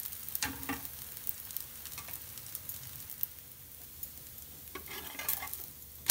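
Dosa batter frying on a hot flat dosa pan, a steady sizzle, with a few short scrapes and clicks of a metal spatula as the dosa is worked loose and lifted to be flipped near the end.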